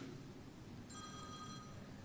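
Faint electronic ring: several high, steady tones held together for just under a second, starting about a second in, over quiet room tone.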